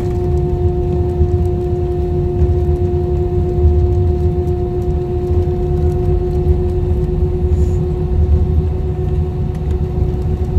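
Jet airliner cabin noise while the plane rolls slowly along the runway after landing: a steady low rumble with a steady engine hum over it.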